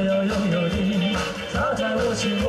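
Live band music: a man singing with wide vibrato over a drum kit and band accompaniment.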